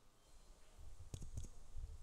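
A few faint clicks a little over a second in, over a low background rumble.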